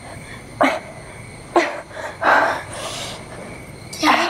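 A frightened woman whimpering and sobbing in short gasping cries, about a second apart, some dropping in pitch.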